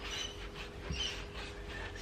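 A round bristle wax brush scrubbing clear wax onto painted wood, with faint repeated swishing strokes.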